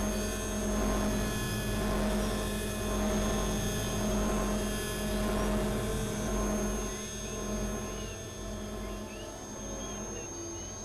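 Experimental synthesizer drone: several steady held tones over a noisy wash, swelling and fading about once a second. After about seven seconds the low end thins out and it gets quieter, with short rising chirps.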